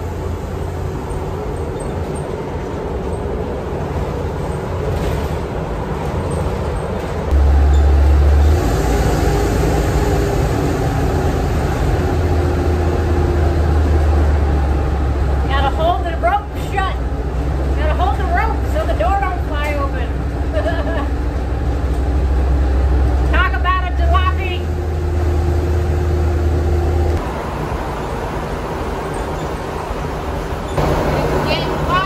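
Old Ford E350 shuttle bus under way, heard from inside the cab: a steady low engine and road rumble that steps louder about a quarter of the way through, with rattles and road noise coming into the cab.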